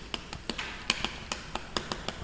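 Chalk writing on a chalkboard: a run of sharp, irregular taps as each stroke lands on the board.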